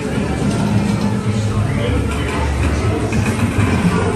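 Theme-park dark ride's show audio: background music with indistinct voices of animatronic pirate figures.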